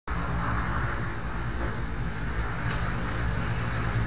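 Steady low rumble of an idling vehicle engine, with a single faint click a little before three seconds in.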